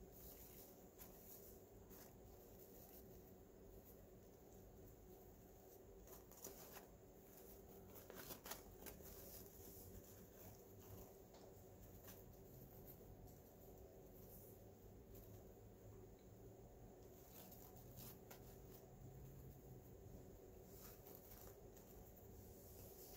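Near silence: faint rustling and crinkling of wired ribbon as a bow is fluffed out by hand, with a few louder rustles about eight seconds in, over a low steady hum.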